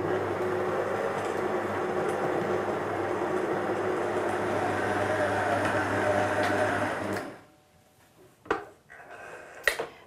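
Electric stand mixer running at low speed, its beater working softened butter and icing sugar together: a steady motor hum that cuts off about seven seconds in. Two short clicks follow.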